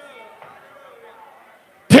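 Faint voices in a church hall, then a man's loud amplified preaching voice cutting in abruptly near the end.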